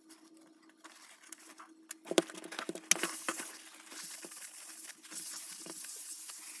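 Paper towel rustling, with scattered light clicks and taps as small eyeshadow pans and the palette are handled on a hard tabletop. Nearly quiet for the first second, then busier from about two seconds in.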